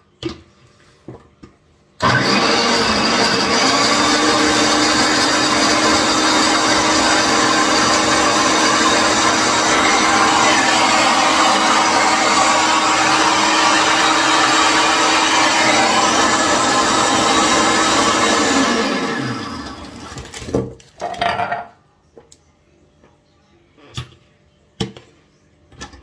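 Countertop blender with a glass jug blending almond milk, fromage blanc and crushed biscuits and chocolate bars into a shake: the motor spins up about two seconds in, runs loud and steady for about seventeen seconds, then winds down with falling pitch. A few knocks follow as the jug is handled.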